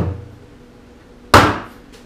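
A plastic five-gallon pail set down onto another pail: one loud, sharp knock about a second and a half in, with a short ring after it. A softer knock comes right at the start.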